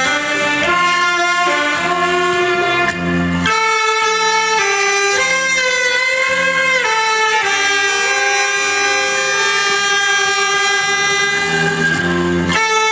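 Saxophones playing a slow melody over a backing track from a loudspeaker; from about three and a half seconds in they hold long, sustained notes.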